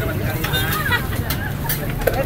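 Indistinct voices over a steady low rumble of street noise, with a few light clicks.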